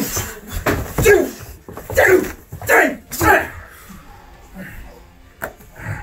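A man's short cries, each falling in pitch, about five of them in the first three and a half seconds of a scuffle. A sharp knock comes about five and a half seconds in.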